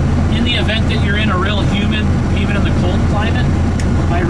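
Steady low hum of the ARGO Sasquatch XTX's engine running, heard inside the closed cab, with a man talking over it.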